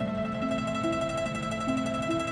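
Guqin playing a slow melody of single plucked notes, each left to ring, a new note about every half second.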